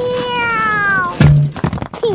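A long pitched cartoon sound gliding downward as a toy demolition digger's wrecking ball swings. About a second in comes a loud crash as the ball hits a wall of soft toy blocks, followed by a few knocks of blocks tumbling down.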